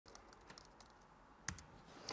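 Faint typing on a MacBook laptop keyboard: a scatter of light key clicks, with one sharper click about one and a half seconds in.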